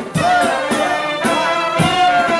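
Macedonian folk dance music: a loud, ornamented wind melody over deep drum beats, played for the dancers.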